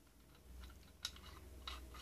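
Faint clicks of metal hydraulic fittings knocking together in the hands as a check valve is set against a T fitting: one sharper click about a second in and a few lighter ones near the end.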